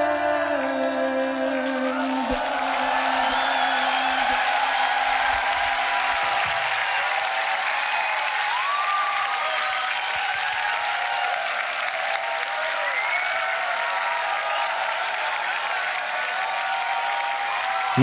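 The end of a live beatbox loop: its held tones step down and fade out over the first few seconds. A large audience cheers and applauds steadily through the rest.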